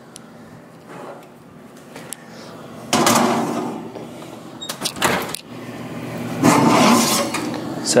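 A cast iron skillet being handled into an oven: a loud scrape and clatter about three seconds in, a sharp click around five seconds, and another burst of handling noise near the end.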